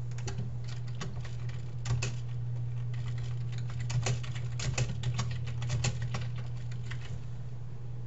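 Typing on a computer keyboard: a run of irregular key clicks, thickest in the middle, over a steady low hum.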